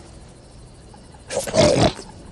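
A short, loud roar from an animated lion, coming about a second and a half in.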